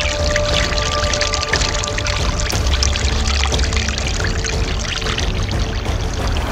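Raw sewage pouring steadily out of a 160 mm pipe into a pit, a continuous rushing splash, with background music underneath.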